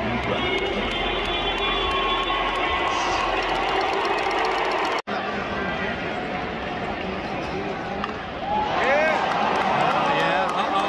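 Baseball stadium crowd: many overlapping voices chattering and calling out across the stands. The sound cuts out for an instant halfway through, and near the end one drawn-out call rises and falls in pitch over the crowd.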